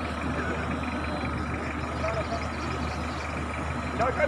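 Pickup truck engine running with a steady low hum.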